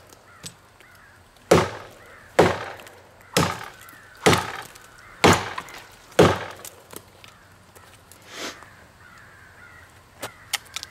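Schrade Bolo machete chopping into a standing tree trunk: six hard chops about a second apart, then a pause.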